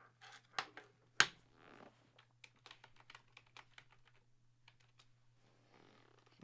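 Quiet, irregular light clicks and taps of small hard objects, with one sharper click about a second in and fewer clicks toward the end.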